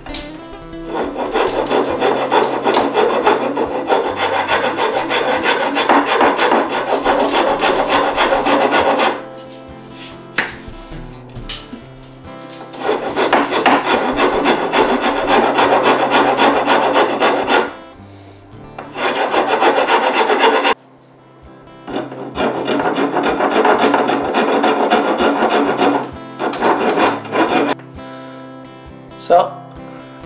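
A metal file rasping across the wooden shoulder of an axe handle in long runs of quick back-and-forth strokes, broken by short pauses, taking down the high spots so the axe head will seat.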